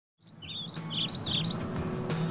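Birds chirping: a quick run of short, high chirps and little pitch glides that fade in just after the start, over a soft low background.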